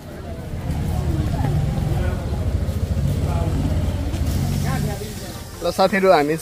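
A motor vehicle's engine running close by: a low, steady rumble that swells about half a second in and fades at about five seconds, over faint voices. Near the end a loud voice with a sliding pitch comes in.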